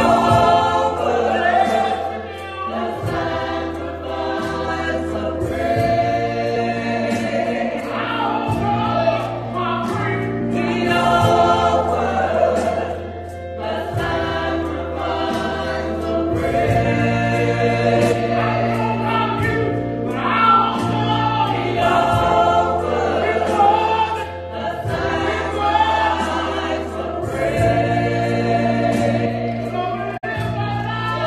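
Small gospel choir singing into microphones, backed by piano, continuous throughout.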